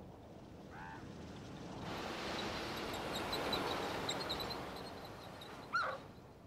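Elk calling: a short, high mewing call about a second in and a louder call that bends up in pitch near the end, over a rush of noise that swells in the middle with faint high chirps.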